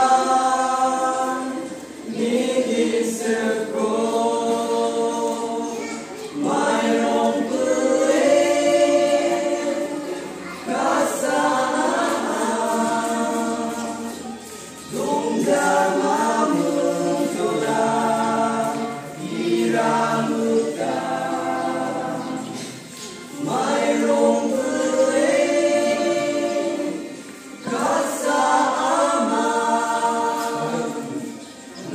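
A mixed group of voices singing a song together without instruments, in phrases of a few seconds with short breaks for breath between them.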